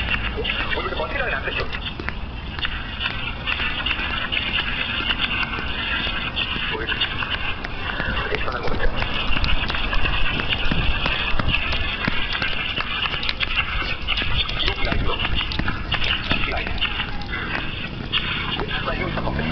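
Footsteps on a hard tiled floor while walking, irregular knocks over a steady background of indistinct voices.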